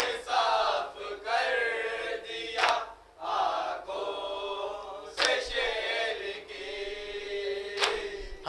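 A group of men and boys chanting a Shia noha (mourning lament) together, with three sharp, unison hand slaps on the chest (matam) about every two and a half seconds.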